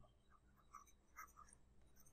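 Near silence, with faint scattered taps and scratches of a stylus writing on a tablet screen.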